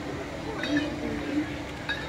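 Faint distant voices over low outdoor background noise, one voice briefly holding a steady tone in the middle.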